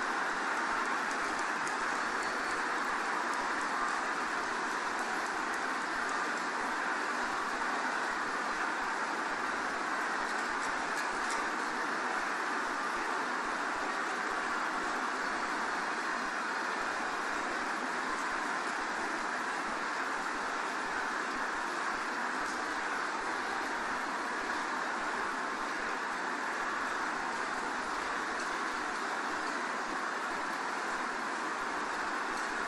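Large congregation praying aloud all at once: a steady, even roar of many voices in which no single voice stands out.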